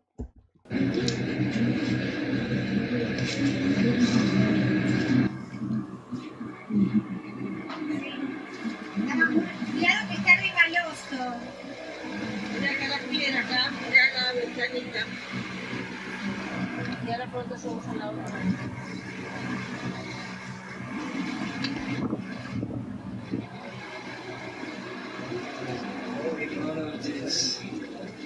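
Soundtrack of a video being played back: indistinct voices over steady background noise. It starts abruptly about a second in and is louder for the first few seconds.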